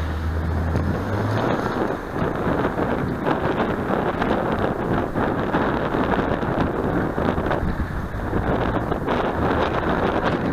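Wind noise buffeting the microphone of a cyclist's camera while riding, with road traffic underneath; a low hum sounds in the first second or so.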